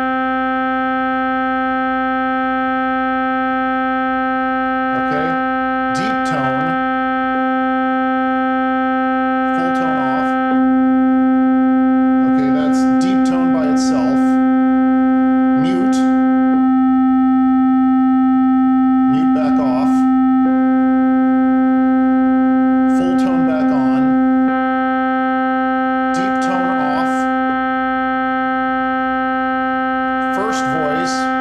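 A 1940s Solovox tube keyboard instrument holds one steady note near middle C (about 260 Hz) while its tone controls are switched, so the tone colour changes several times without any change in pitch. Short noises come in now and then over the held note.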